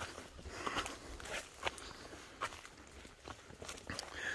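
Footsteps on a loose rocky path: stones crunching and clicking underfoot in a handful of quiet, irregularly spaced steps.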